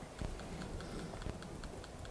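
A key pressed over and over, faint quick clicks about five a second, skipping through presentation slides.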